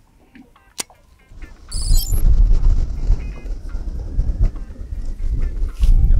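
Wind buffeting the microphone, a loud low rumble that starts about two seconds in, over quiet background music with light plucked notes.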